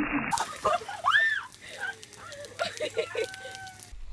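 People's voices calling out, with a high-pitched rising-and-falling squeal about a second in and a short held note near the end.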